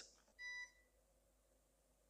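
A single short electronic beep, about a quarter second long, from the scalar network analyzer as its sweep script is started; otherwise near silence.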